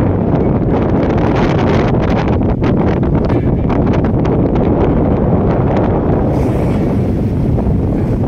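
Strong wind buffeting the microphone, over the rush of sea water washing along the bow of a ship under way.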